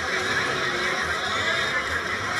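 A crowd of children and adults chattering and calling out over one another, the children's high voices on top.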